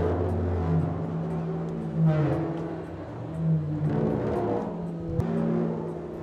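Electronic drone music from a live experimental performance: sustained low tones with surges that swell and fade about every two seconds, over a faint fast ticking.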